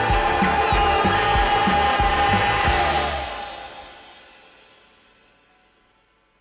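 Live rock band playing the final bars of a song, with a steady drum beat and a long held note, stopping together about three seconds in; the last chord rings on and fades away.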